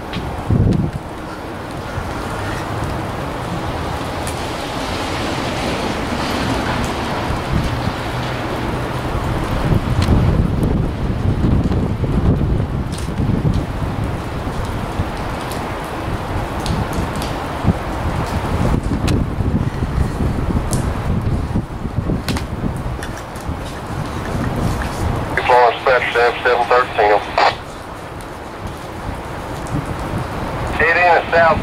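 Locomotive's K5LA air horn sounding a quick run of short taps near the end, over steady wind noise on the microphone, rain, and a low rumble.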